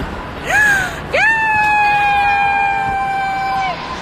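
A girl's high-pitched excited scream: a short squeal about half a second in, then one long held scream at a steady pitch that stops shortly before the end.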